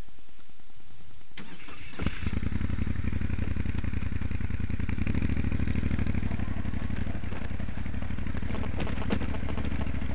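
Moto Guzzi Stelvio NTX's transverse V-twin engine being started: the starter turns it over and the engine catches about two seconds in, then runs steadily and pulls harder about five seconds in as the bike moves off over the gravel, with a few sharp clicks near the end.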